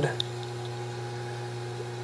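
Steady low electrical hum made of several fixed tones, running evenly underneath a pause in the talk.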